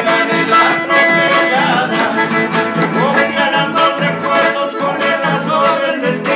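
Accordion and strummed guitar playing an instrumental passage between sung verses.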